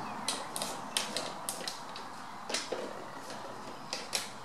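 Irregular sharp clicks and ticks, about ten in four seconds, over a steady background hiss.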